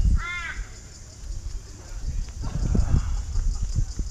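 A crow caws once, a short nasal call just after the start, over low rumbling and knocks from the body-worn camera moving.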